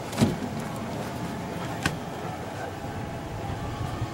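A dull thump about a quarter second in and a sharp click near the two-second mark, over a steady low hum.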